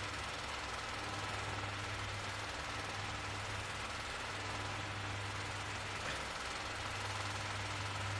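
Steady low hum with an even hiss underneath, unchanging throughout: background noise of the room picked up by a phone microphone.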